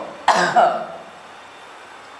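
A short burst of a man's voice about a third of a second in, then low steady room hiss.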